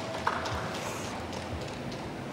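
Carom billiard balls clicking against one another and off the cushions as a scoring three-cushion shot plays out: a few sharp clicks, the loudest about a quarter second in, over a low steady murmur.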